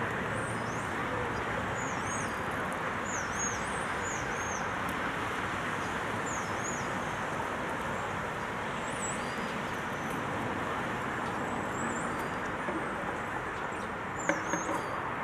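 Steady city background noise like distant road traffic, with a small bird chirping over it in short, high, repeated calls, about one a second.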